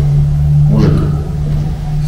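A steady low hum, with one short vocal sound from a man about a second in.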